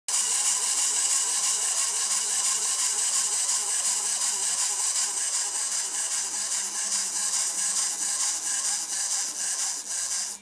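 Steady mechanical whirring with a strong hiss and a fine, rapid rattle. It runs unbroken and cuts off suddenly.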